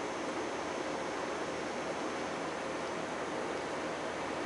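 A steady, even hiss of room background noise, unchanged throughout, with no distinct events.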